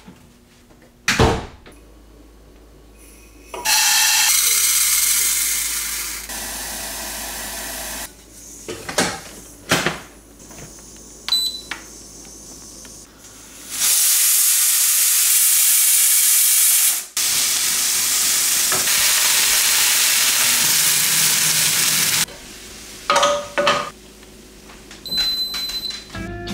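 Stovetop pressure cooker venting steam: a loud, steady, high-pitched hiss in two long stretches that break off briefly once, with short kitchen clicks and knocks before them.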